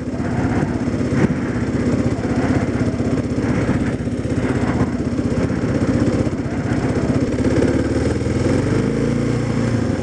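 Motorcycle engine running steadily at a constant cruise, over a steady rush of wind and road noise.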